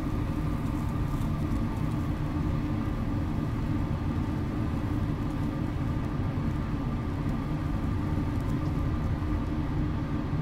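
Steady low mechanical hum and rumble with a few constant tones, unchanging throughout; the burning steel wool makes no clearly distinct sound over it.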